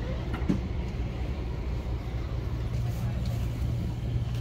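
Vehicle engine idling with a steady low hum, under faint background voices.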